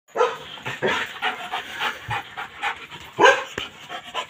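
A Belgian Malinois panting hard in short, uneven bursts, two or three a second, with one louder bark a little past three seconds in.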